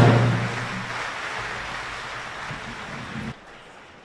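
An opera orchestra's closing chord breaks off and dies away into a fading, noisy hall sound, which drops away abruptly about three seconds in.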